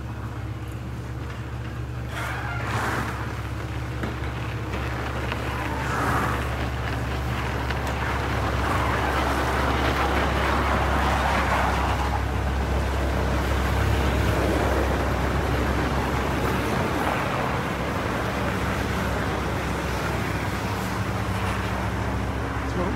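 A steady low mechanical hum under a rushing noise that grows louder towards the middle.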